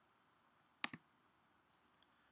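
Two quick clicks of a computer mouse close together, about a second in, against near silence.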